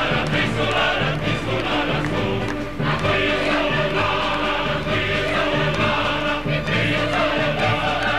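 Operatic music: an orchestra playing under several voices singing together, full and sustained without a break.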